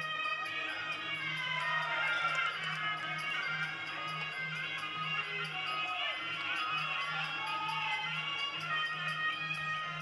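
Sarama, the traditional music played during Muay Thai bouts: a reedy wind melody that wavers and slides in pitch over a steady percussion beat.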